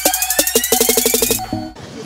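Electronic dance music building up: a rising synth sweep over drum hits that come faster and faster. It cuts off about three-quarters of the way through, leaving faint outdoor background noise.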